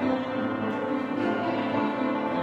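Slow piano music, held chords ringing on.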